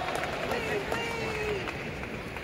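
Quiet crowd chatter with faint distant voices.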